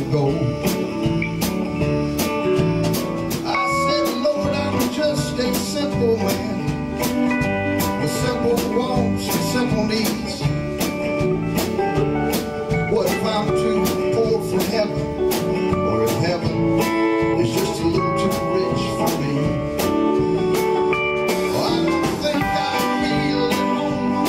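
Live band playing a country-funk groove: acoustic guitar, electric guitar, bass guitar and keyboard over a drum kit keeping a steady beat.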